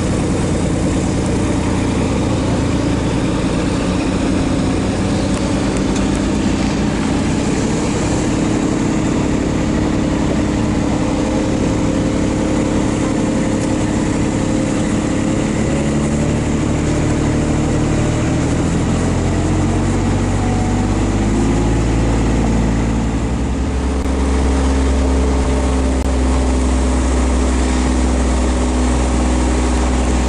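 Engine of a John Deere Pro Gator utility vehicle running as it drives up a road, its pitch rising and falling with speed. In the last several seconds it settles into a deeper, steadier low rumble.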